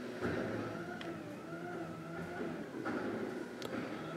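Natural-gas-powered automated side-loader garbage truck running, a steady, fairly faint hum with a slightly wavering pitch and a couple of light clicks.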